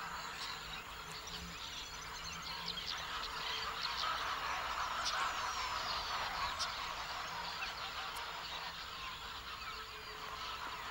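Outdoor ambience of many birds chirping and calling together, with thin, quick high chirps over a dense chorus that swells slightly in the middle.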